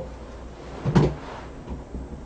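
A single short knock about a second in, over faint room noise.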